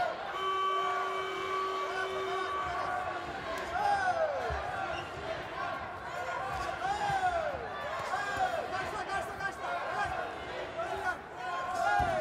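A ringing bell tone lasting about two seconds near the start, the signal to begin the round, followed by repeated shouts from around the ring and occasional dull thuds as the fighters move on the canvas.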